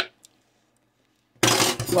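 A spoon ticks against a plastic tub, ending a run of quick taps, and is followed by a second faint tick. After about a second of near quiet, a loud, harsh clattering rustle lasts about half a second.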